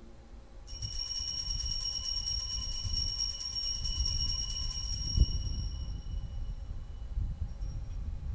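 Altar bells shaken rapidly for about five seconds at the elevation of the chalice, marking the consecration, then left to ring out and fade. There is one dull thump near the end of the ringing.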